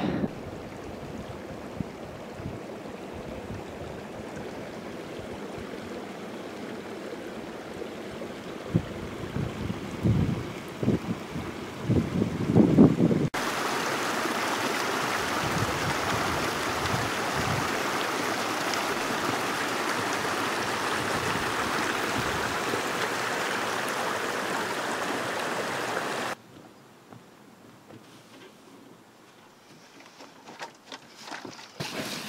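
Small mountain stream rushing over rocks: a steady, even rush that starts abruptly about 13 seconds in and stops abruptly a few seconds before the end. Before it there is a fainter steady hiss with a few low thumps; after it, a much quieter stretch.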